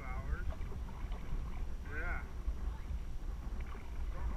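Brief snatches of people talking in a raft, their words indistinct, near the start and again about two seconds in, over a steady low rumble.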